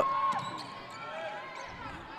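Live basketball play on a hardwood gym floor: a ball being dribbled, with the murmur of voices from the crowd and court.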